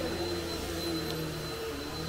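A steady low hum with a faint, thin high whine above it and no distinct event.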